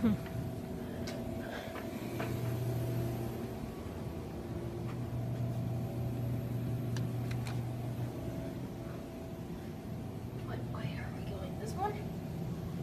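Steady low hum with a few faint clicks, and faint muffled voices near the end.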